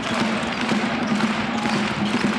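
Game sound of a basketball arena: light knocks of a ball bouncing on the court and court noise over a steady low hum.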